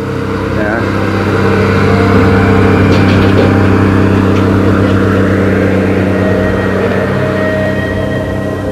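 A large engine running at a steady speed, loud, with a deep even hum.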